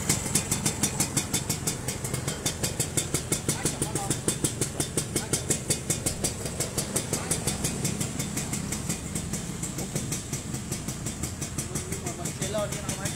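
Suzuki Sport 120's two-stroke single-cylinder engine idling steadily through its exhaust, with an even, rapid beat.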